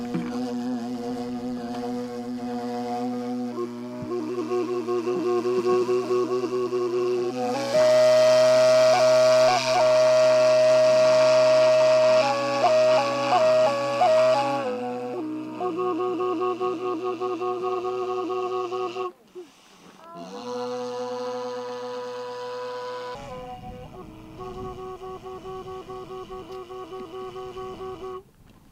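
Tsuur, the Altai Uriankhai end-blown wooden flute, played with a steady low hummed drone under a wavering melody. The playing swells louder in the middle with a fast trill, breaks off briefly past the halfway point, then resumes.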